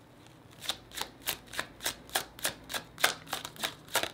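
A deck of tarot cards being shuffled by hand: after a short pause the cards slap and riffle in a quick, even run of about four clicks a second.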